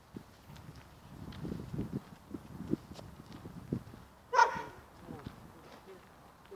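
A dog barks once, short and loud, a little over four seconds in, after a few seconds of soft footstep thuds as the dog and handler walk.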